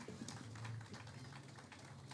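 Faint pause in which only a low steady hum and scattered small clicks are heard.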